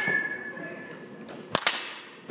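Batting-cage practice: a sharp knock with a short ringing tone at the start, then two sharp cracks close together about a second and a half in, the loudest, as the bat meets a pitched baseball on a full swing.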